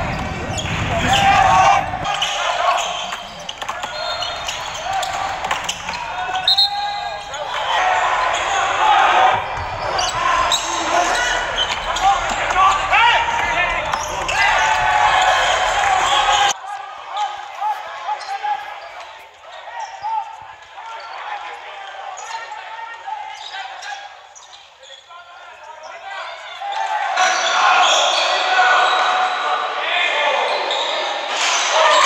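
Live basketball game sound in a gym: the ball bouncing on the court amid players' and spectators' voices. About halfway through the sound suddenly becomes quieter and thinner, then picks up again near the end.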